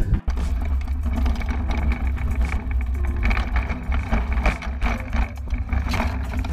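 Steady low rumble with many small clicks and rattles, picked up by a camera on a riderless mountain bike as it rolls and tumbles through long grass, with wind on the microphone.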